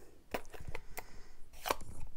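A handful of light, irregular clicks and taps as stamping supplies (ink pad, sponge dauber) are picked up and set down on the craft table.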